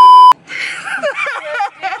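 Loud test-tone beep of the kind played with television colour bars, lasting about a third of a second and starting and stopping abruptly. Women's voices and laughter follow.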